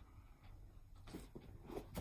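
Faint handling noise from a cardboard mailing box being moved on a table, with a few soft knocks and rustles about a second in and near the end, over a low room hum.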